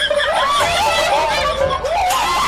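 Children and teenagers laughing and chattering together, several voices at once.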